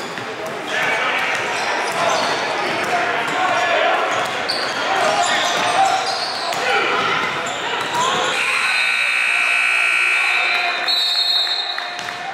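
Basketball game sound in a gym: a ball dribbled on the hardwood floor and the voices of players and spectators echoing in the hall. Past the middle, a high, held squeak lasts a couple of seconds.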